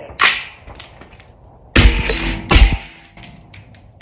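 Two suppressed rifle shots, just under a second apart, from a 12-inch LMT piston-driven 5.56 rifle fitted with a full-size .30-calibre full-back-pressure suppressor. A sharp click comes before them. The full-back-pressure can is driving gas back toward the shooter's face.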